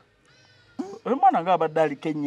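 A man's voice after a short pause: a drawn-out, sing-song exclamation whose pitch rises and falls, without clear words.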